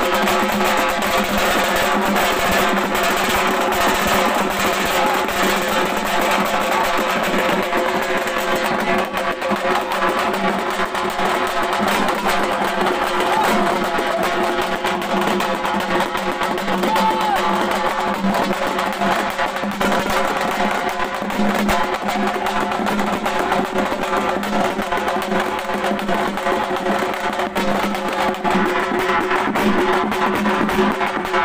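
Halgi drum ensemble drumming densely with sticks, mixed with steady held musical tones.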